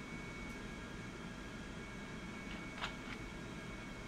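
Quiet room tone of a voice recording: steady low hiss and hum with a faint thin whistle-like tone, and one brief soft click about three seconds in.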